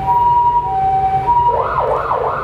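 Emergency vehicle siren sounding a two-tone hi-lo pattern, each tone held a little over half a second. About a second and a half in it switches to a fast rising-and-falling yelp.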